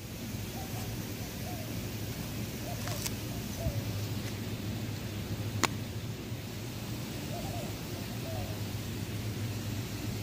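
Outdoor ambience: a steady hiss and low hum, with a few faint short wavering calls and two sharp clicks, one about three seconds in and one past the middle.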